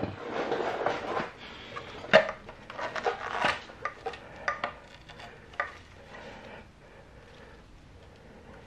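Valve cover of a 2014 Suzuki GSX-R 750 being worked free and lifted off the cylinder head: clattering knocks and scraping of the cover against the head. The handling is busiest in the first four seconds, with a sharp knock about two seconds in, and quieter near the end.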